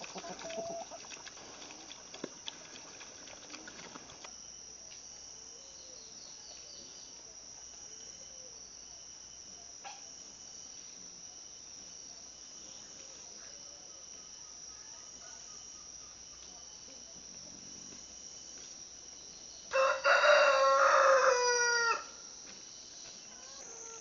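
A rooster crows once, loudly, near the end, for about two seconds, dropping in pitch at the end. Before that there are faint sounds of pigs feeding at the start, then quiet.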